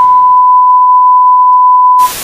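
Loud, steady, single-pitch electronic test tone, the reference tone that accompanies TV colour bars, held unchanged.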